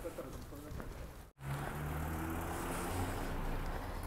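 A car's engine running close by, a steady low hum with road noise, starting abruptly about a third of the way in.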